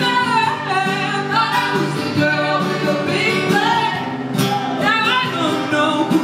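Woman singing live into a handheld microphone, accompanied by two acoustic guitars.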